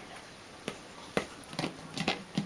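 A few scattered light clicks and taps as a dog mouths and paws at a small plastic air pump.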